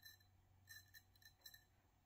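Kizer Sheepdog XL folding knife blade shaving hair off a forearm in a sharpness test: near silence broken by a few faint, crisp ticks as hairs are cut.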